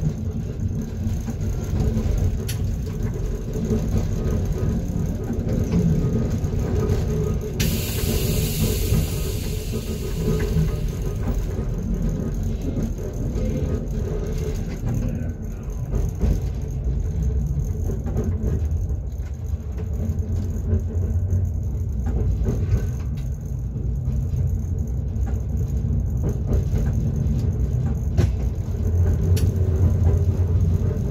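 Inside the cab of a class 425.95 electric multiple unit (ŽOS Vrútky/Stadler) running on the line: a steady low rumble of wheels on the track, with a few faint steady motor tones. A high hiss starts suddenly about eight seconds in and lasts about four seconds.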